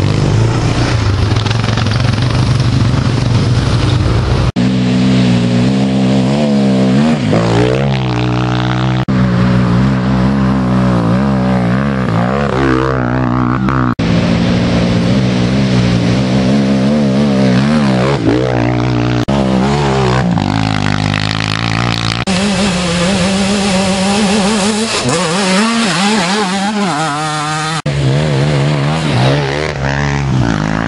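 Youth racing quads (ATVs) passing one after another, their engines revving up and dropping off again and again.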